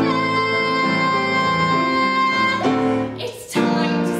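A woman singing a musical-theatre song over instrumental accompaniment. She holds one long steady note for about two and a half seconds, there is a brief break with a breath, and the next phrase starts near the end.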